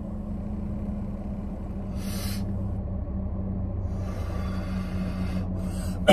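Steady low hum inside a car cabin, with a short breathy hiss from the smoker about two seconds in.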